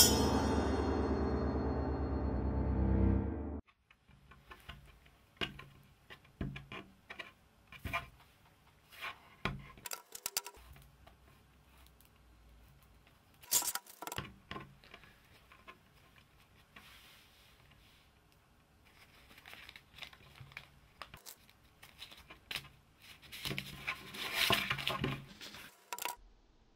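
A short stretch of music that cuts off about three and a half seconds in, followed by quiet, irregular taps of fingertips on a tabletop as fingers walk across it, with a busier flurry of taps near the end.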